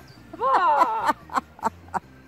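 A dog giving one drawn-out yowl that falls in pitch, followed by three short, sharp barks about a third of a second apart.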